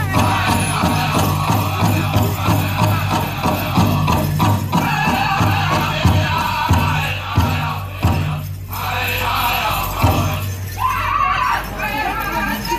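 Powwow drum group: a big drum beaten at a steady pulse under the singers' song.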